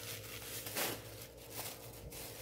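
Faint rustling and crinkling of a small plastic bag of spice being handled, with a slightly louder rustle a little under a second in.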